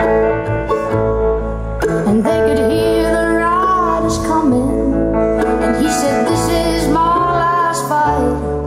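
Live country band: a woman singing at the microphone over electric guitar, mandolin and upright bass, with long held notes, a few of them wavering with vibrato.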